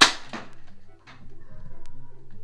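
A toy foam-dart blaster firing once: a single sharp snap right at the start that dies away within a fraction of a second, followed by quiet room sound with a faint steady hum.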